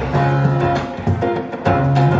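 Solid-body electric guitar playing chords in an instrumental stretch of a song, with low sustained notes under the strums.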